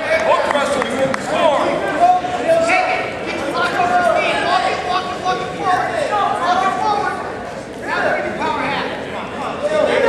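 Men's voices shouting and talking in a large gymnasium hall, with background chatter from the people watching.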